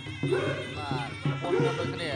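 Traditional Khmer boxing ring music playing: a reed oboe (sralai) with sliding, wavering notes over a steady drumbeat of about three beats a second, with a commentator talking over it.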